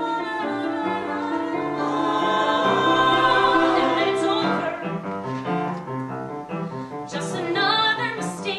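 A woman singing a show tune solo, holding long notes with vibrato, with piano accompaniment; the voice swells to its loudest about three seconds in.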